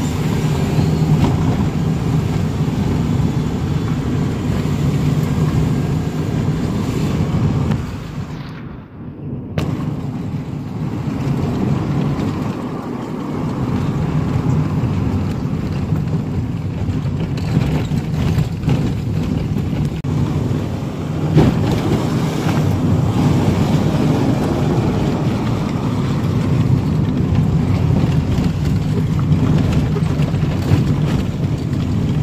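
A car driving, heard from inside the cabin: a steady low engine and road rumble that briefly drops away about nine seconds in.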